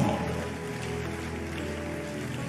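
A church band's keyboard playing slow, sustained chords softly.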